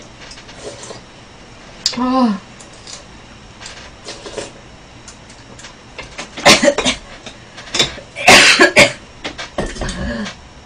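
A woman coughing in sudden bursts, once about six and a half seconds in and again harder about eight seconds in, while eating food in spicy chili oil. A short murmured vocal sound comes about two seconds in.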